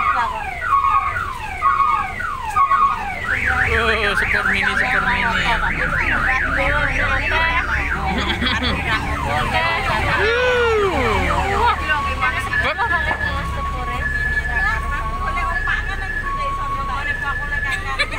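Electronic multi-tone siren horn of a sepur mini (mini road train) cycling through its patterns: repeated falling sweeps, then a fast warble of about four cycles a second, a single swoop, then two tones beeping alternately. A low engine drone runs underneath.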